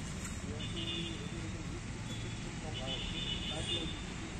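Faint, indistinct voices of people talking, over a steady low outdoor rumble, with a thin high-pitched tone coming in twice.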